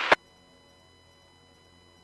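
A two-way radio voice transmission cuts off just after the start, leaving near silence with a faint steady electrical hum and thin whine.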